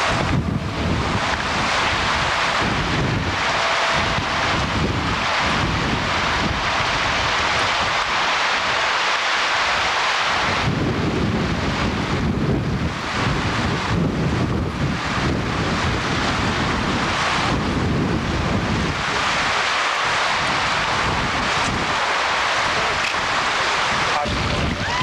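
Strong wind blowing across the camcorder's microphone: a loud, continuous rushing that rises and falls in gusts.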